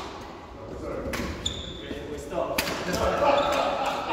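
Indistinct men's voices echoing in a large sports hall, with a few sharp knocks and short high squeaks of trainers on the wooden court floor.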